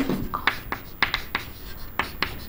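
Chalk writing on a chalkboard: a quick run of short scratching strokes and taps as a word is written out.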